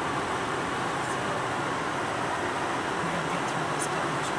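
Steady car-cabin noise from a slow-moving car: an even engine and road hum with a fan-like hiss.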